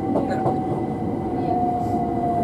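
Class 377 Electrostar electric multiple unit heard from inside the carriage while running: a steady rumble of the train on the track with a thin electric whine that falls slightly in pitch.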